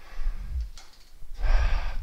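A man breathing while doing rows on suspension straps, with a breathy exhale about one and a half seconds in.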